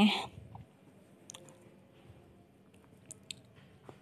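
Eggplant slices deep-frying in oil: faint sizzling with a few short, sharp crackles scattered through it, two close together past the middle.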